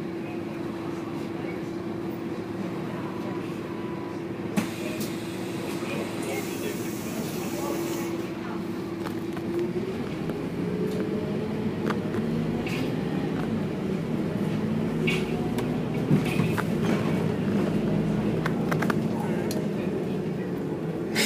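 Bus engine and cabin noise from inside a moving bus. A steady hum runs for the first half, then gives way to a lower, wavering engine note from about ten seconds in, with a few light clicks and rattles.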